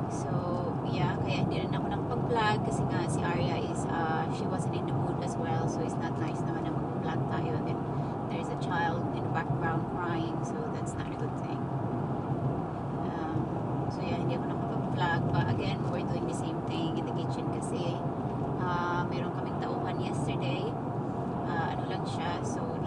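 Steady engine and tyre noise of a car driving at road speed, heard from inside the cabin.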